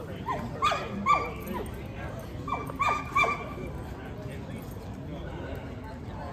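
A dog yelping: a quick run of short yelps, each falling in pitch, starting just after the beginning and another run about two and a half seconds in.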